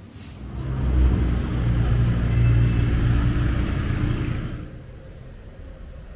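A motor vehicle's engine passing by: a low engine sound that swells up about a second in, holds for about three seconds, then fades away.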